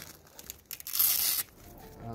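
A hook-and-loop (Velcro) strap on a carp tent's rod holder being pulled open: a few small scuffs, then one short, loud rip about a second in.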